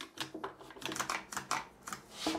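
Irwin Quick-Grip pistol-grip bar clamp being squeezed over and over, its jaw ratcheting along the bar in a quick run of sharp clicks, several a second; the footage is sped up, so the squeezes come faster than by hand.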